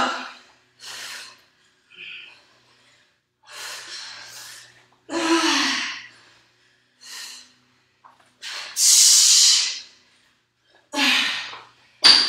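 A woman breathing hard from exertion during burpees and dumbbell snatches: sharp, gasping breaths about every one to two seconds, with one long, loud exhale near the middle.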